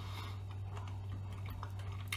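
A person chewing a mouthful of chicken strips in sauce, with faint irregular small mouth clicks, over a steady low hum.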